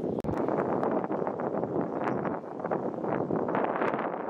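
Outdoor wind buffeting the microphone in irregular gusts, with rustling, and a momentary break just after the start.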